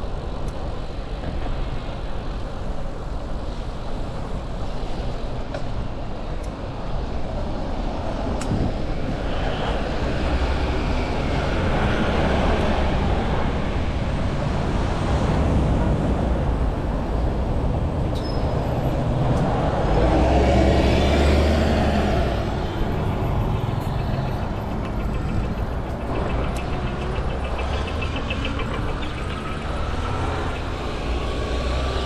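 City street traffic: cars and other motor vehicles running past on the road. The noise is steady, swells through the middle and is loudest about twenty seconds in as a vehicle passes close.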